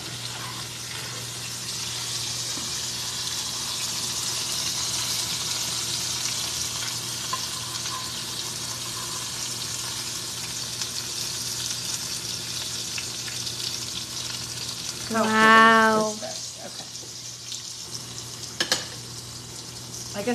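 Stuffed zucchini blossoms frying in shallow oil in an enamelled braiser, a steady sizzle that thins in the second half as pieces are lifted out. About three-quarters of the way through a voice hums one short note, and near the end there is a single sharp clack.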